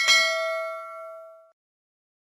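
A single notification-bell 'ding' sound effect, set off by the cursor clicking the bell icon of a subscribe animation: one bright chime that rings out and fades away within about a second and a half.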